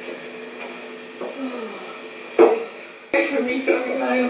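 Faint, indistinct voices with one sharp knock about two and a half seconds in, then louder voices near the end.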